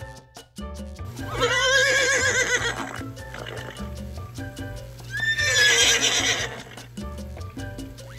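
A horse whinnying twice, two long quavering whinnies about a second and a half each, louder than the background music with a steady beat underneath.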